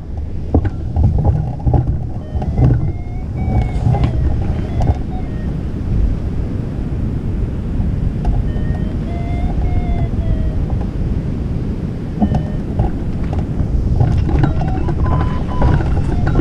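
Wind buffeting a camera microphone: a steady, dense rumble. Faint high calls rise and fall briefly, twice.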